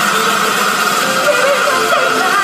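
A solo singer's amplified voice, heard faintly through a loud, steady wash of noise in a large hall; the singing comes through more clearly toward the end.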